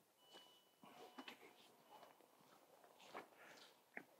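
Near silence, with a few faint short clicks and rustles.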